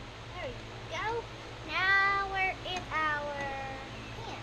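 A string of high-pitched wordless vocal sounds: two short downward slides, then a loud held note and a longer one that slowly falls in pitch.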